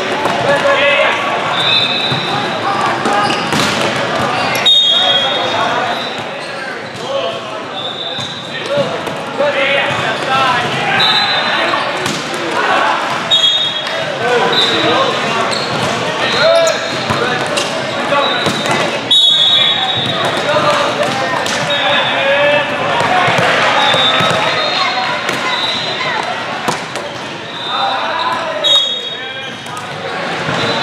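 Indoor volleyball play in a busy hall: a volleyball being struck and landing, with sharp thuds scattered throughout, over a constant babble of players and spectators. Short high-pitched tones recur every second or two.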